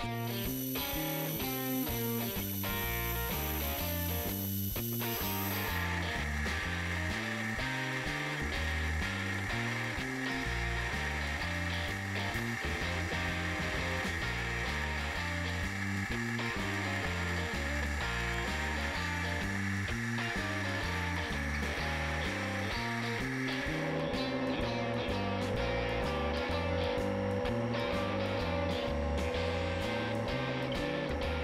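Background music with a steady beat over the sound of a CNC router milling aluminum sheet with a 1/4-inch solid carbide spiral O-flute bit at 10,000 RPM. The cut has a rattling edge of chatter, which the machinist put down to the sheet being held only by double-sided tape and clamps, a setup not rigid enough.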